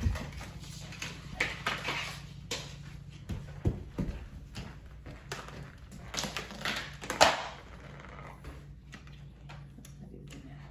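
Scattered knocks and scuffs of plastic Tupperware lids and a flat mop being picked up and set down on a hardwood floor, with footsteps. The loudest comes about seven seconds in.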